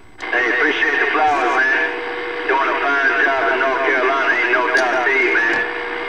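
A distant station's voice coming in over a CB radio, thin and narrow-sounding and hard to make out, with a steady whistle tone under it for stretches.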